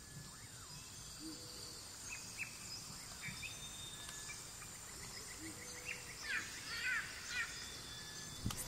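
Faint outdoor nature ambience: scattered bird chirps and short trills over a steady high insect drone. The calls grow busier and louder in the last couple of seconds.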